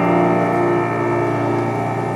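Live piano playing held chords.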